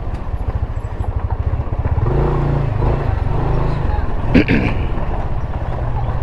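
Motorcycle engine running at low speed, its pitch lifting briefly about two seconds in, with a short voice-like call about four seconds in.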